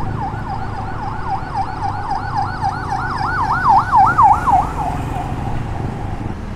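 Emergency vehicle siren on a fast yelp, its pitch sweeping up and down about four times a second. It grows louder to a peak about four seconds in, then fades away, over a steady low rumble of road noise.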